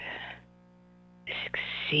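Speech only: a breathy voice trails off, then about a second of pause with a faint steady hum, then a voice starts again.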